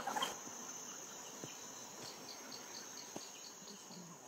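Forest insects calling: a steady high-pitched drone with a faint regular pipping of about four a second. A brief rustle at the very start.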